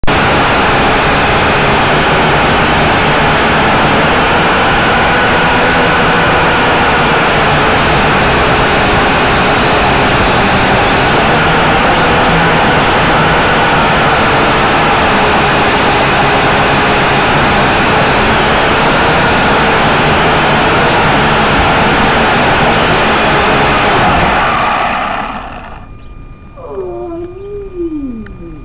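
A small JJRC H8C quadcopter's motors and propellers, heard through its own onboard camera: a loud, steady whir with a faint wavering whine. It dies away about 25 seconds in, as the drone comes to rest in grass.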